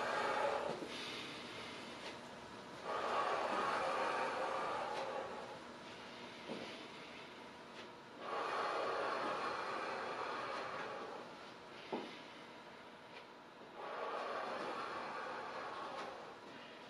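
A man breathing deeply and audibly during slow lateral lunges: four long, even breaths about five to six seconds apart, with quieter pauses between them. A faint click sounds about twelve seconds in.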